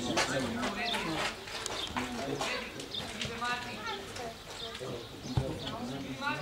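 Several voices calling and shouting on a youth football pitch, overlapping, with no clear words. A single sharp thud sounds about five seconds in.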